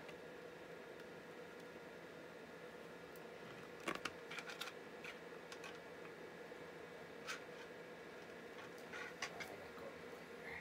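Quiet room tone with a steady low hum, broken by a few faint clicks and ticks about four seconds in and again near the end.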